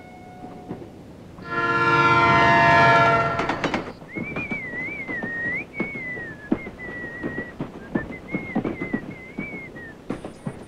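A train horn sounds loudly for about two seconds. Then a moving railway carriage rattles and clatters while a person whistles a wavering tune over it.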